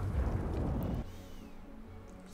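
A low, dull rumble from a film soundtrack that drops away about a second in, leaving only faint background sound.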